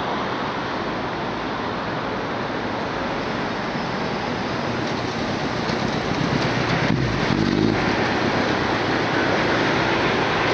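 Steady traffic and wind noise, then a Kawasaki motorcycle riding in close past and its sound swelling from about six to eight seconds in.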